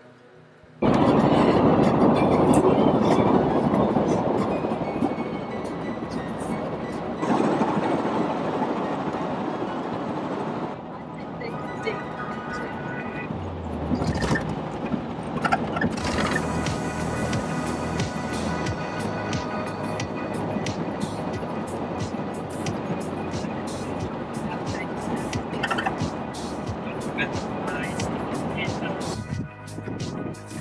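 Noisy camcorder sound with background music and indistinct voices, starting abruptly about a second in. From around the middle, the running noise of a moving vehicle with many small clicks.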